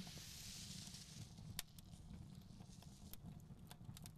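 Faint background ambience: a low steady rumble with scattered small crackles and clicks, and a soft hiss during the first second.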